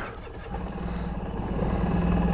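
Suzuki Burgman scooter engine idling, a steady low hum that sets in about half a second in and slowly grows louder.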